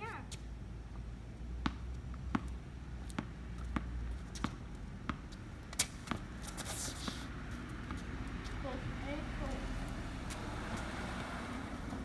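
A tennis ball dribbled on a concrete driveway, a sharp bounce about every 0.7 s for the first six seconds, followed by sneaker scuffs. Toward the end a car passing swells up.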